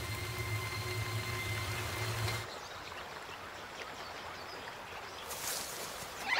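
Film soundtrack: a steady low drone with faint held tones above it, which cuts off suddenly about two and a half seconds in, leaving a quieter even hiss of background ambience.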